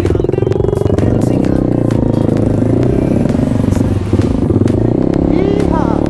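Single-cylinder dirt bike engine running at low revs on a slow trail ride, its note rising and falling with the throttle, with knocks and clatter as the bike rolls over rough ground.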